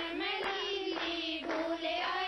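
Women singing a Haryanvi folk song for gidha together, high voices holding a steady melody, with hand claps keeping time about twice a second.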